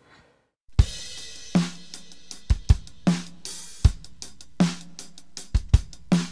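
Playback of a pop-rock song mix opening with a drum kit beat, kick and snare hits with cymbals, that starts about a second in after a brief silence. The mix is dry, with little reverb or effects.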